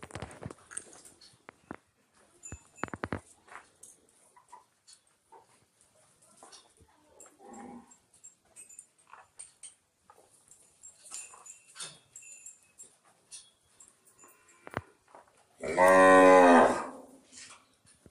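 A Gir cow mooing once, a loud call of about a second and a half near the end, amid scattered faint knocks and clicks.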